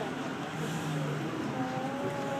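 Subway train running, heard from inside the car: a steady rumble and rushing noise.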